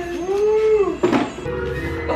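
Music playing, with a long howl-like voice over it that rises and falls during the first second.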